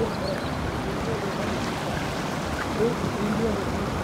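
Steady rush of the Athi River spilling over rock ledges in shallow white-water rapids, with faint voices over it.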